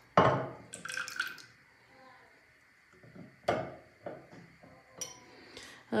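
A small tea glass and an olive oil bottle knocking and clinking on a granite countertop as half a glass of oil is poured into a pot of cake batter. There is a sharp knock right at the start, another about three and a half seconds in, and a few lighter clinks, with near quiet in between.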